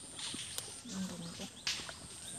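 Rustling of water hyacinth being pulled up by hand from a marshy pool, in short bursts about half a second in and near the end, with a sharp snap of a stalk about half a second in. A faint voice is heard briefly around the middle.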